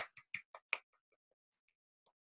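One person clapping hands: four short, sharp claps in quick succession in the first second, then only faint clicks, heard through a video-call connection.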